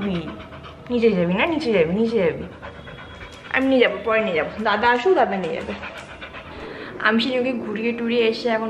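Yellow Labrador-type dog panting, mixed with a woman's voice gliding up and down in sing-song, wordless tones in two spells.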